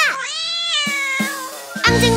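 One long meow, rising and then falling in pitch, in a children's cat song while the backing music drops out. The music comes back in near the end.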